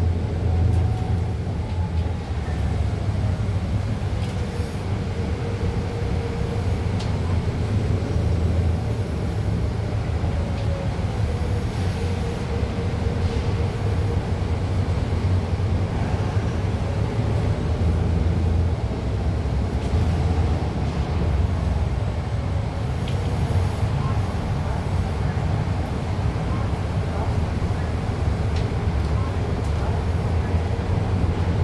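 Cabin noise inside a Nova Bus LFS hybrid-electric city bus under way: a steady low rumble of drivetrain and road noise, with a faint wavering whine above it.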